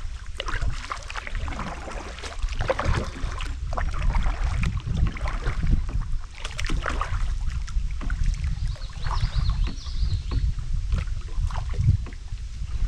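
Kayak paddling: a double-bladed paddle dipping into the river water again and again with irregular splashes, drips and knocks, over a steady low rumble of wind on the microphone.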